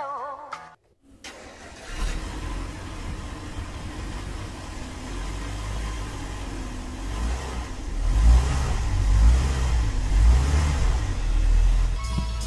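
A snow-covered Mercedes-Benz CLS's engine starting from cold about a second in, then running steadily, getting louder with deeper revs from about eight seconds in.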